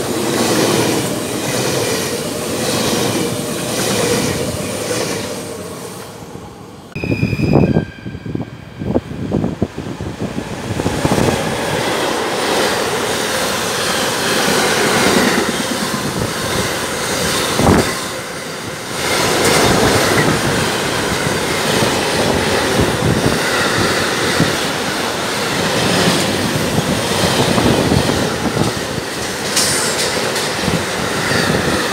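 An NS double-decker passenger train rolls past with an even clatter of wheels over the rail joints, then fades. About seven seconds in, a container freight train arrives with a brief high wheel squeal and several heavy thumps, and its wagons then roll past steadily and loudly.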